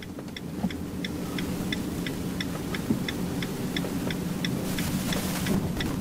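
Turn-signal indicator clicking evenly, about three clicks a second, inside a van cabin over the steady hum of the engine and road as the van turns off the road. A brief hiss comes about five seconds in.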